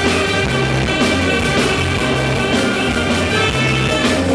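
Live afrobeat band playing, with a tenor saxophone sounding a lead line over a repeating bass line and drums.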